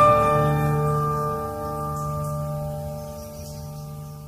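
Acoustic guitar chord ringing out and slowly fading.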